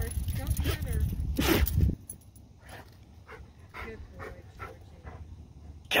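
A black Labrador and a foxhound play-fighting, with short growling and yipping calls and scuffling, loudest in the first two seconds; after that only quieter, scattered mouthing and scuffling sounds.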